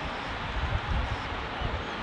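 Steady background ambience of a football stadium with empty stands, heard through the broadcast's pitch-side microphones: an even hiss with an uneven low rumble, and no crowd noise.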